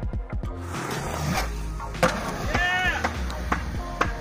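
Background music over skateboard wheels rolling on concrete, with a sharp clack about two seconds in and a brief voice call just after.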